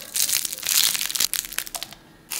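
Crisp deep-fried lumpia wrapper crackling and crunching as a pizza-filled roll is broken apart by hand, in several quick bursts of crackles.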